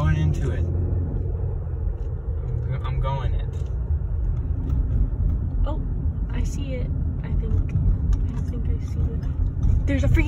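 Steady low rumble of a car's engine and tyres on the road, heard from inside the moving car's cabin. Short bits of voice come through around three seconds in and again past six seconds.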